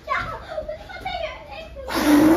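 Family members laughing and calling out, with a child's voice among them. Right at the end, a sudden loud rush of breath as a man blows hard at an upturned plastic bottle.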